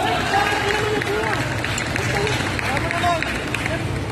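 Players running on an indoor basketball court: a quick run of footsteps on the hardwood floor, with voices calling out and the chatter of onlookers in the hall.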